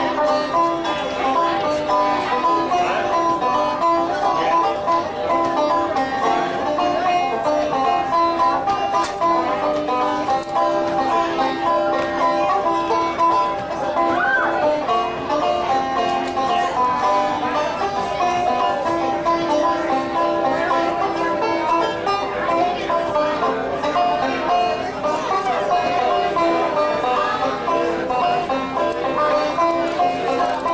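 Five-string banjo played live through a stage microphone, a steady run of picked notes in an instrumental passage with no singing.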